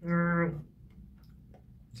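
A man's short, steady-pitched hum lasting about half a second, then a few faint clicks from a clear plastic food container lid being handled.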